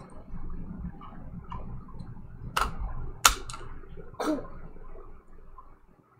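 Gloved hands handling a trading card and a clear rigid plastic card holder: low rustling, with three sharp plastic clicks in the middle.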